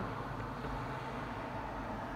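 Steady low hum and hiss of background noise inside a car's cabin.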